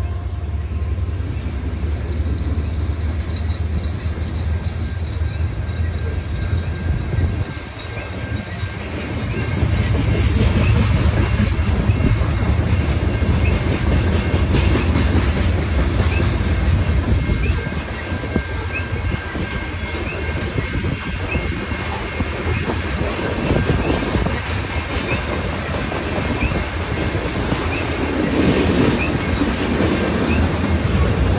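Freight train rolling past at close range: a steady low rumble with wheels clattering over the rail joints, and a few brief high wheel squeals.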